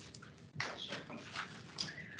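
A few faint, short taps and rustles in a quiet meeting room, three soft knocks spread across two seconds.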